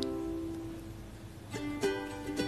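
Soft background music of plucked strings. A held note fades away, then fresh plucked notes come in about one and a half seconds in.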